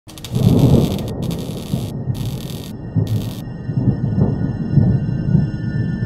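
Sound-designed production logo sting: a loud, low, rough noise running underneath, with bursts of high hiss that cut in and out four times, then several thin high held tones over it from about three and a half seconds in.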